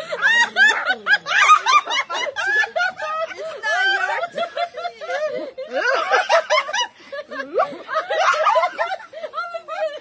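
A group of women laughing hard together, several voices overlapping in continuous giggles and cackles.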